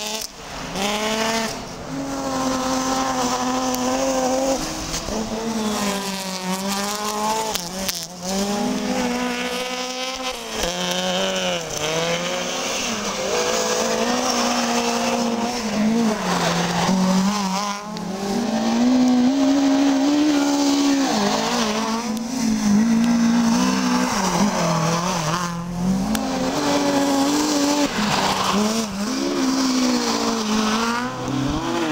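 Rally car engine revving hard on a snow-covered stage, its pitch climbing and dropping again and again as it shifts through the gears. The sound breaks off abruptly several times where clips are cut together.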